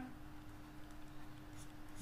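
Faint scratching of a stylus writing on a tablet, over quiet room tone with a thin steady hum.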